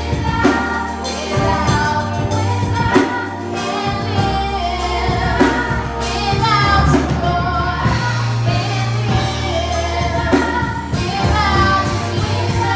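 Youth gospel choir singing together with young female voices out front, over keyboard accompaniment with a deep held bass line and regular drum-kit hits.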